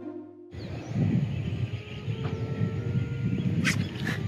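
Opening music cuts off about half a second in. Then comes outdoor background noise with a fluctuating low rumble, and a brief sharp sound near the end.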